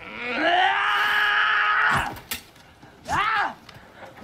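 A young man's long scream, rising at first and then held for about two seconds, followed by a shorter shout about three seconds in.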